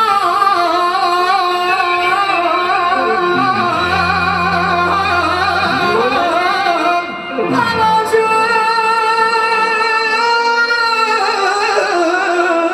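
Live song with a male singer's amplified vocals and a clarinet playing the melody over band accompaniment, the lines heavily ornamented with wavering pitch. The music thins briefly about seven seconds in, then picks up again.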